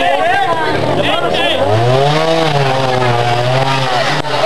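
Trials motorcycle engine revving: its note climbs over about a second, peaks, then holds steady at the higher pitch. Onlookers talk over the first part.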